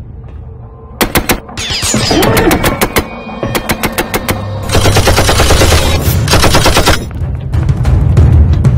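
Automatic gunfire in several rapid bursts, beginning about a second in, with the longest, densest burst in the second half, over a dramatic film score.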